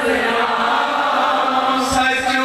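A large congregation of many voices chanting a devotional dhuni together, blended into one steady, loud chant.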